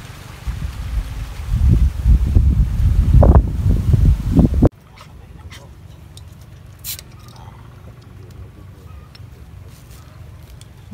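Wind buffeting the microphone over water pouring from an irrigation hose into a ditch. The noise cuts off suddenly about halfway through, leaving quiet outdoor background with a sharp click or two.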